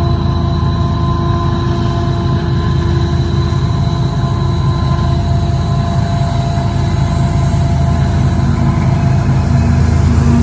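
Union Pacific diesel-electric freight locomotives approaching and drawing alongside, a steady heavy engine rumble that grows a little louder near the end as the lead units come level.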